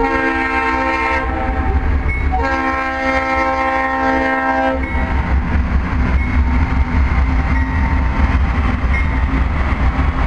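Diesel locomotive horn sounding two blasts, a short one and then a longer one, each a chord of several tones, over the heavy low rumble of the train. After the horn stops, the locomotive and train keep rumbling past.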